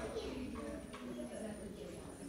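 Faint, indistinct voices of people talking in the background, with low murmuring tones and no clear words.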